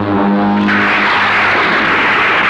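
A held low note on the soundtrack fades out, and about two-thirds of a second in a loud, steady rushing hiss comes in and carries on.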